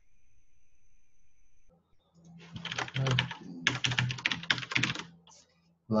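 Typing on a computer keyboard: a quick run of keystrokes starting about two seconds in, with a brief pause in the middle. Before it, a faint steady high-pitched tone.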